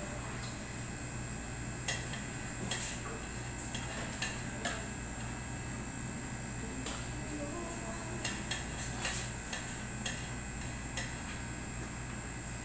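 Light clinks and taps of kitchen utensils and dishes, about ten scattered through, over the steady hum of an air conditioner.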